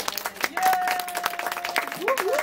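Small group clapping and applauding, with one voice holding a long, steady cheering note through the middle.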